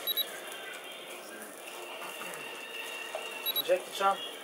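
Metal tongs clinking lightly against a disposable instant grill's wire rack, a brief pair of clinks near the start and another near the end, over quiet voices.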